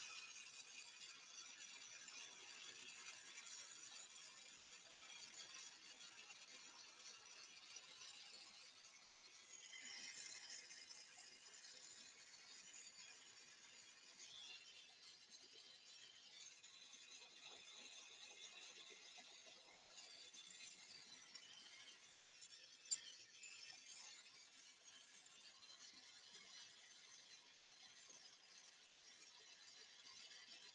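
Near silence, with a few faint small clicks and one brief sharper click about 23 seconds in.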